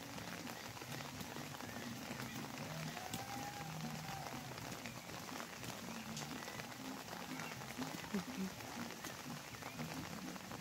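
Steady rain falling on leafy garden plants, a soft even hiss.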